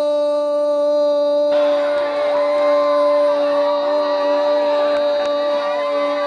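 A football commentator's long, held goal cry on one steady pitch. About a second and a half in, excited shouting from other voices rises over it.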